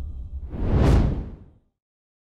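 Cinematic whoosh sound effect over a low rumble, swelling to a peak about a second in and fading away by about a second and a half in: an outro logo sting.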